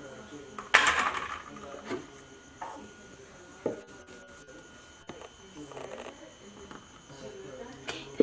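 A plastic blender jar being handled after blending: a loud short clatter about a second in, then a few sharp knocks as the jar is lifted off its base and tipped over a ceramic mug to pour.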